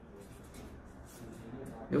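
Pen writing on a sheet of paper: a run of faint, irregular scratching strokes.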